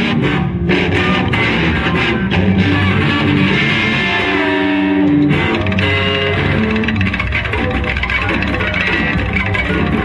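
Two amplified electric guitars played together, dense and continuous, with a sustained note standing out about four to five seconds in.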